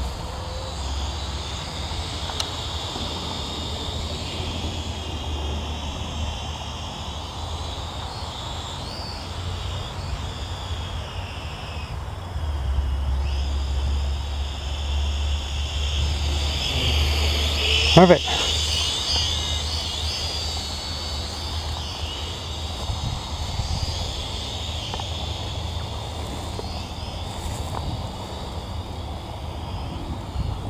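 Quadcopter drone flying overhead, its propellers a thin whine that wavers in pitch as it manoeuvres. Wind rumbles on the microphone throughout and grows stronger from about twelve seconds in.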